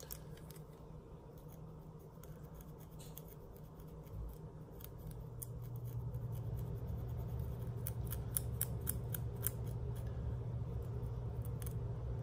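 Long acrylic fingernails and a pointed pick scratching a dry, flaking scalp between braids close to the microphone: crisp clicking scratches that come thicker in the second half. A low steady hum comes in about five seconds in.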